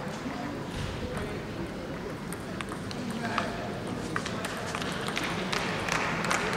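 Sports hall ambience: indistinct voices murmuring, with scattered, irregular sharp clicks of table tennis balls bouncing.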